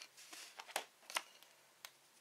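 Paper stickers being handled and flipped through by hand: about five small, sharp paper ticks, unevenly spaced, and quiet.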